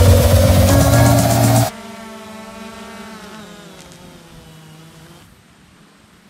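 Electronic music cuts off a little under two seconds in. Then a DJI Mavic Air 2 drone's propellers whine close by, the pitch slowly sinking as the motors spin down after the drone is caught by hand. The whine stops about a second before the end.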